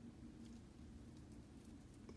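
Near silence: faint low room hum with a few faint soft ticks from handling the doll's small bouquet.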